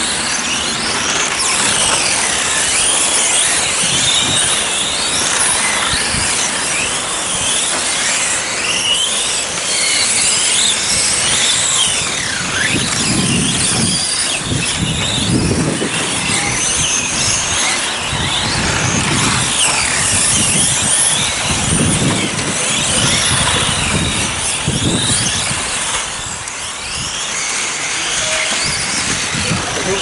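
Several electric on-road RC racing cars with brushless motors lapping a track. Their high-pitched motor whines overlap, rising and falling as the cars accelerate and brake.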